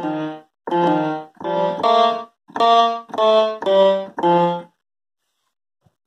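A pitched one-shot instrument sample in Native Instruments Maschine, played from a keyboard as a short run of about eight notes at changing pitches. The sample runs through an AHD amplitude envelope whose hold has not yet been lengthened, so each note stops after about half a second.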